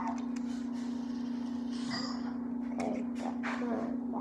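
A steady low hum runs throughout, with faint scattered clicks and a few brief, quiet voice sounds in the second half.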